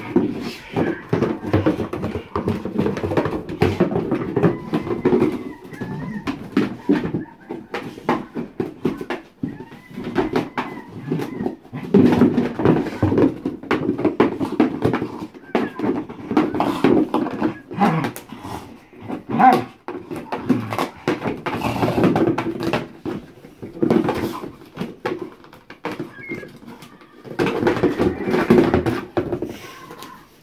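A dog scratching, pawing and biting at a cardboard box with a noise-making ball shut inside: irregular cardboard scrapes, knocks and clicks, busy almost throughout with short lulls.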